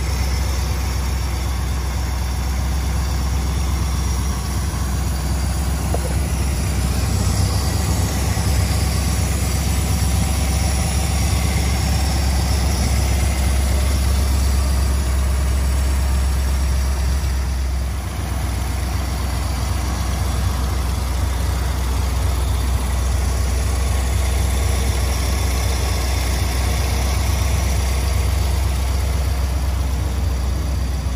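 1956 Ford Thunderbird's Y-block V8, fed by an electronic fuel injection unit in place of a carburettor, idling steadily, heard close up over the open engine bay.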